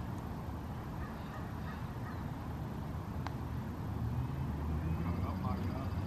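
Low outdoor background with faint distant voices, and a single short click about three seconds in: a putter striking a golf ball.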